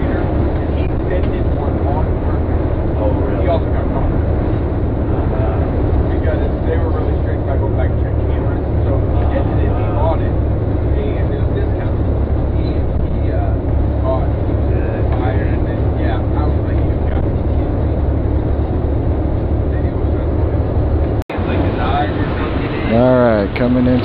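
Charter motor coach running at road speed, heard inside the cabin: a steady low drone of engine and road noise, with faint voices in the background. The sound drops out briefly near the end.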